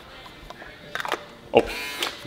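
Handheld electric foil shaver: a few small plastic clicks as it is handled, then the motor runs with a steady buzz for about half a second near the end.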